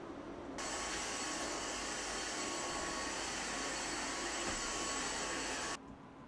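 An electric appliance motor running: a steady whooshing whir with a thin, fixed high whine. It comes on about half a second in and cuts off suddenly near the end.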